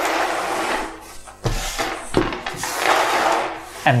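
Small 3D-printed plastic game pieces and tokens being pushed and slid across a wooden tabletop, in several noisy sweeps with a few light knocks.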